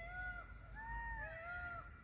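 Faint animal calls: four or five short calls, each a smooth rise and fall in pitch, following one another and partly overlapping.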